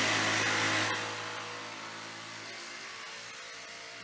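A motor running with a steady hum over a hiss. It is loudest at the start and drops off over the first second, then holds steady.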